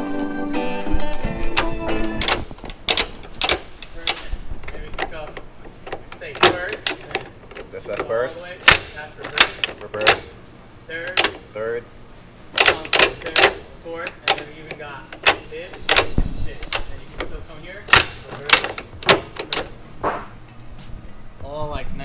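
Shift cables and linkage on a K-swapped Honda Acty's six-speed transmission clicking and clunking as the gear lever is worked through the gears from the cab, a dense irregular run of sharp metal clicks. Background music fades out during the first two seconds.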